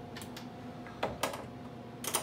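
A few light clicks and knocks from handling the exposure unit's lid and the aluminium screen frame on its glass, with a sharper click about a second in.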